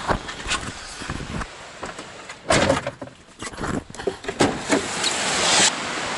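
Handling noise inside a car: clicks and knocks as the camera is taken from its dashboard mount and moved by hand, with a louder knock about two and a half seconds in. A rush of noise builds near the end and cuts off suddenly.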